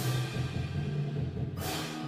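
Band music for a marching show: sustained low chords with two loud crashes, one at the start and another about a second and a half in.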